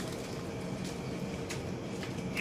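Steady low background rumble and hum, with two brief high chirps from caged birds about a second in and near the end.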